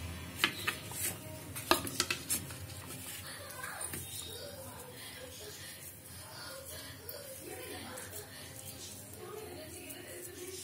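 A handful of sharp clinks of ceramic plates being handled on a kitchen counter, bunched in the first two and a half seconds, with faint voices in the background afterwards.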